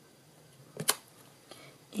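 A single sharp click a little under halfway through, as a clear acrylic stamp block is handled against the desk and card; around it only quiet room tone.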